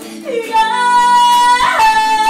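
A woman singing a long high held note, sliding up into it about half a second in and briefly breaking it near the end, over strummed electric guitar chords.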